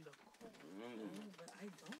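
A man's voice, faint and without music, in drawn-out, wavering vocal sounds ending in "oh yeah".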